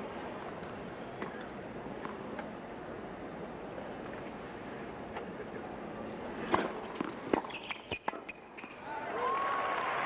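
Tennis ball struck by rackets in a serve-and-volley point: a sharp serve impact about six and a half seconds in, then several quick racket hits and ball bounces within about a second and a half. Steady stadium crowd murmur underneath, with crowd applause rising near the end as the point finishes.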